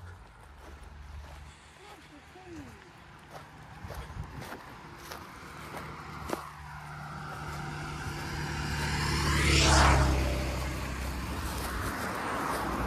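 A motor vehicle approaching and passing close by on the road: engine and tyre noise building for several seconds, loudest about ten seconds in, then easing off.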